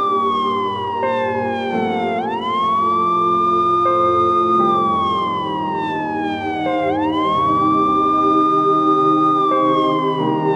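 A siren wailing slowly: each cycle swoops up, holds, then slides down over about two seconds, repeating about every four and a half seconds. A low sustained music drone runs underneath.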